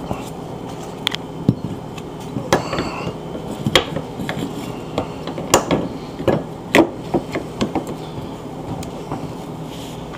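Irregular metallic clicks and knocks of a refrigerator door hinge, its washers and bolts being handled and fitted back into place, with the sharpest knocks a little past the middle. A steady low hum runs underneath.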